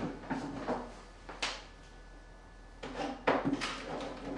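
Handling noise from an aesthetic-medicine machine's plastic cabinet as its storage is rummaged for a probe head: scattered clicks and knocks, a sharp click about a second and a half in, a quiet stretch, then a cluster of knocks about three seconds in.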